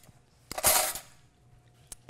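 A short slurp of thick barbecue sauce off a small spoon as it is tasted, about half a second in, then a light click of the spoon against the stainless steel pot near the end.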